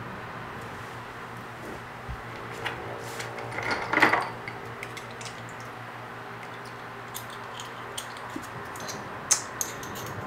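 Small metal suppressor parts clinking against each other as hands fish them out of a plastic bowl of rinse water. There is a short swish of water about four seconds in, then a few light metallic clicks near the end.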